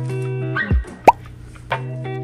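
Instrumental background music with held notes and a soft low beat; about a second in, a short rising 'bloop' pop sound effect is the loudest sound.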